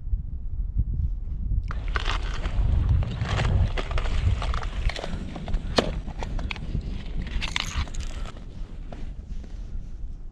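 Wind rumbling on the microphone, with rustling and scattered clicks from gloved hands handling fishing gear and clothing beginning about two seconds in; one sharp click comes about six seconds in.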